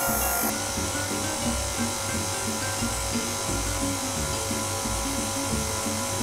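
Stand mixer running steadily, its dough hook turning through flour, under background music with a low pulsing beat.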